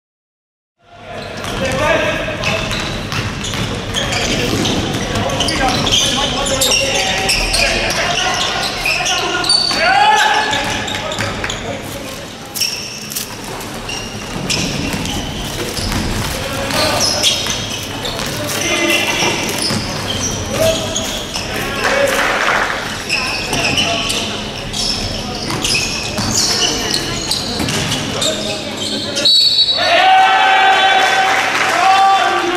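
Live basketball game sound in a gymnasium: the ball bouncing on the court, sharp knocks and clicks, and players' and benches' voices calling out, echoing in the hall.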